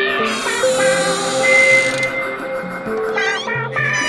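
Hard techno track in a breakdown: the kick drum and bass drop out, leaving sustained synth notes, with a wavering, gliding sound about three seconds in.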